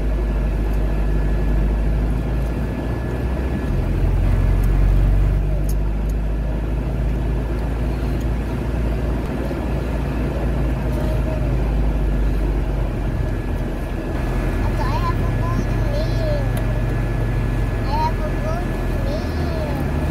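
Steady low engine and road rumble heard from inside a moving car's cabin, swelling slightly for a moment about four seconds in.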